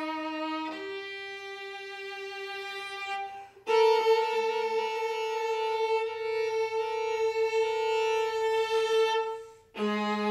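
Solo viola playing slow, long-held bowed notes: one note held for about three seconds, a brief break, then a louder note sustained for about six seconds before the next begins.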